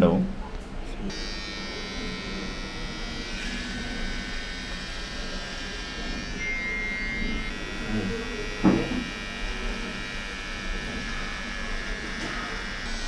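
Electric hair trimmer running steadily against the scalp, starting about a second in, with one short thump about nine seconds in.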